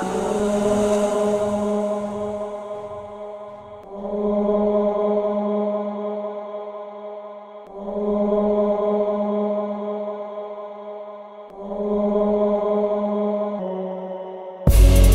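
Instrumental music: a sustained, droning chord that swells and fades about every four seconds, with no drums, opening a beat track.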